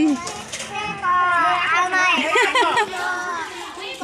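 Several high-pitched voices of women and children talking over one another.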